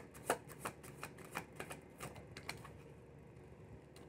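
A deck of tarot cards being shuffled in the hands, the cards flicking against each other about three times a second. The shuffling is faint and stops about two and a half seconds in.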